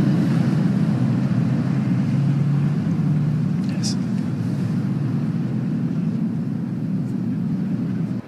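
Steady low rumble of café and street background noise, with a faint click about four seconds in.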